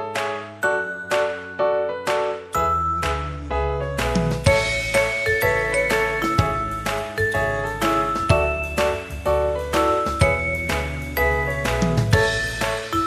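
Background music: a melody of struck notes that ring and fade quickly, joined by a bass line and a steady beat about two and a half seconds in.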